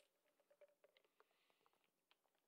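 Near silence, with a few very faint clicks as a plastic drink bottle is handled.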